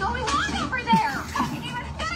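Television dialogue: a woman's raised, excited voice shouting amid commotion, heard through a TV speaker and picked up by a phone.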